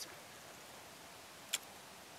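A single short, sharp click about one and a half seconds in, over a faint steady hiss.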